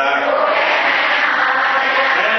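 Chanted Buddhist recitation through a microphone: voice in a steady sing-song chanting tone.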